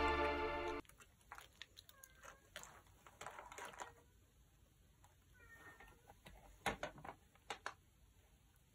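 Background music cuts off within the first second. After that come a few faint, short cat meows and light clicks and rustles from hands moving things in a hamster cage's wood-shaving bedding, with a cluster of clicks near the end.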